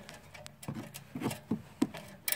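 Several light, irregular metal clicks and taps of a socket and ratchet being fitted onto the E14 external Torx bolt of a car's rear anti-roll bar link.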